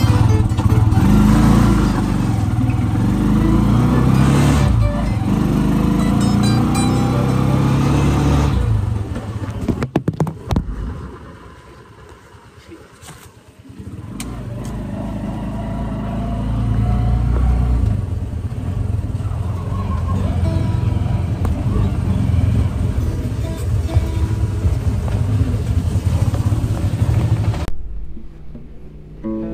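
Motorcycle taxi engine running under way, with an acoustic guitar being played in the cab. The engine sound drops away for a few seconds about ten seconds in, then builds back up.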